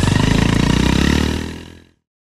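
A low, rapidly pulsing, engine-like rumble that fades out near the end.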